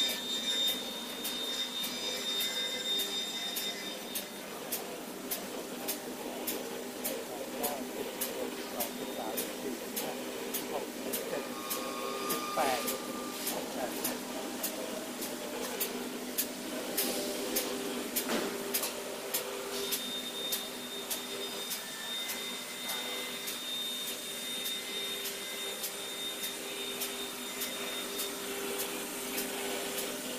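Automatic spiral paper tube machine making toilet paper roll cores, running steadily: a continuous mechanical hum with a few steady tones and a regular, evenly spaced clicking.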